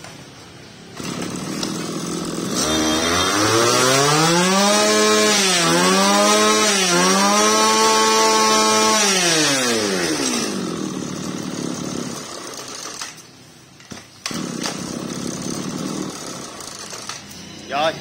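A small two-stroke brush cutter engine running. About three seconds in it is revved up, its pitch rising and then held high with a few dips for several seconds. Then it falls back to a lower idle.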